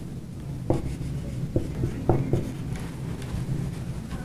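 Dry-erase marker writing on a whiteboard: a series of short, separate strokes as a line of words is written.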